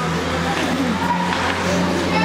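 Ice skate blades scraping and gliding on rink ice as several players skate about, over a steady low hum.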